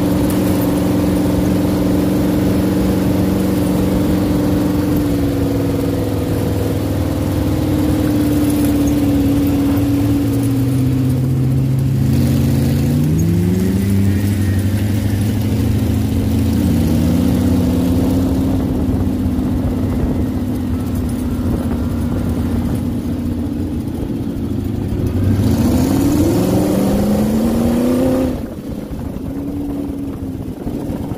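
Sand rail's engine running hard on the dunes, heard from on board with wind rushing past. The engine note holds steady, climbs in pitch about twelve seconds in, dips briefly, then climbs again near the end before easing off.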